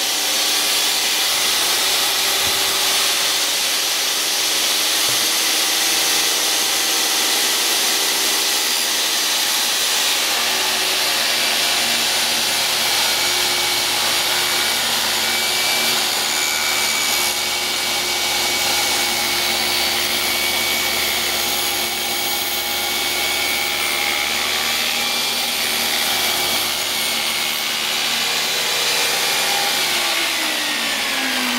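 Skilsaw 15-amp 10-inch worm-drive table saw running steadily with a Diablo carbide blade, ripping a two-by-four lengthwise.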